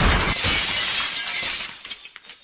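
Glass shattering as a crash sound effect: a dense crash that dies away over about two seconds, with a few small pieces clinking near the end.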